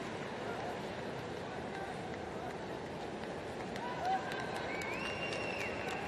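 Stadium crowd noise, a steady hum of many distant voices, with a few faint calls from the stands about four to five seconds in.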